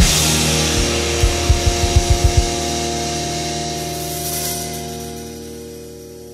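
The ending of a rock song played on a drum kit along with the band's recording: a crash cymbal hit, then a quick run of about eight low drum hits over the next two seconds. After that a held guitar chord and the cymbals ring on and slowly fade out.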